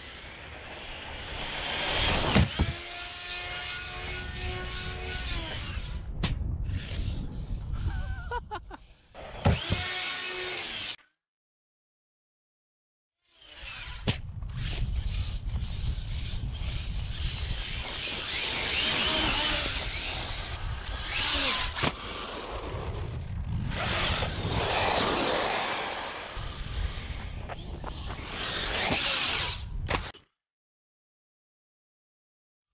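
Arrma Fireteam 1/7 RC truck driven at speed, heard from close on board: its Hobbywing MAX6-driven 4082 2000KV brushless motor whining up and down in pitch with the throttle over wind and tyre noise. The sound cuts out completely for about two seconds near the middle.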